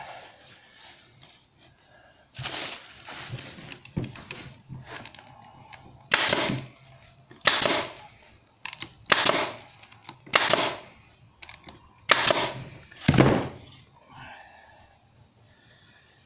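Pneumatic nail gun firing about seven times, mostly in pairs, each a sharp shot: nails being driven to fasten the loose bar back onto a wooden beehive frame holding wax foundation.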